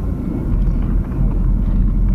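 Steady low rumble of a car in motion, engine and road noise heard from inside the cabin.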